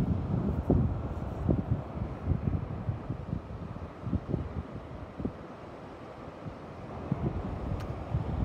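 Wind buffeting the phone's microphone in uneven gusts, a low rumbling noise that rises and falls, easing off somewhat past the middle.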